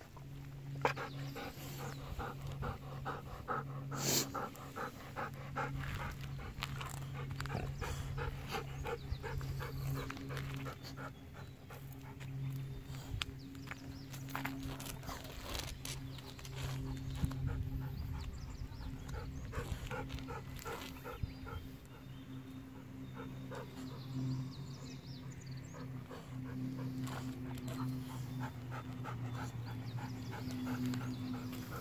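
Golden retriever panting rapidly, about four breaths a second, in long runs. A steady low hum lies beneath it.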